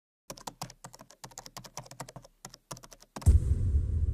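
Quick computer-keyboard typing, about seven keystrokes a second with one short pause. About three seconds in, a deep low boom cuts in, louder than the typing, and keeps rumbling.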